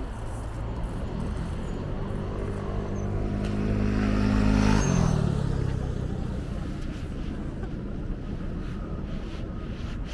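A motor vehicle driving past on a city street: its engine grows louder, then drops in pitch as it passes about five seconds in, and fades away over steady background traffic noise.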